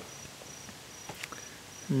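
A cricket chirping in short, even, high-pitched pulses, about three to four a second, with a few faint rustles and clicks about a second in.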